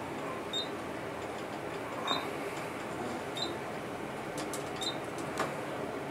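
Ride noise inside a fast-descending Dover traction elevator car: a steady rush of the car travelling down the shaft, with a faint short high beep about every second and a half.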